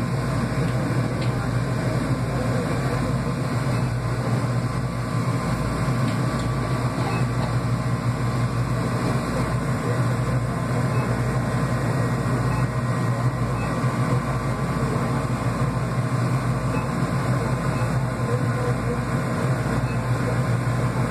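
Steady low mechanical hum of a refrigerated drinks cooler running, with no change throughout.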